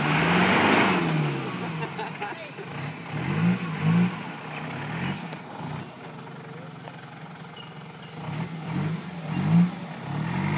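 Toyota Hilux engine revving up and falling back again and again as the 4WD works up a rutted, muddy hill, with a broad rushing noise over the first second or so.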